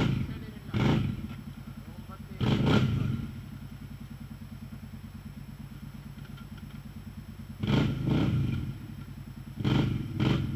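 Quad bike (ATV) engine running with a steady low putter, revved hard in short bursts several times (about a second in, around three seconds, and near eight seconds) while the machine is stuck in a mud hole.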